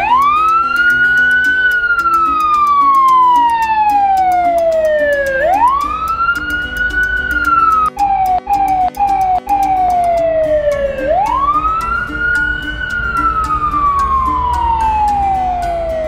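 Electronic wailing siren from a toy fire engine: each wail jumps up fast and then glides slowly down, three times over, and the middle wail cuts out briefly a few times.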